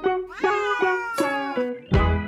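Background music with guitar, and over it a domestic cat's drawn-out meow that rises and then slides slowly down in pitch for about a second.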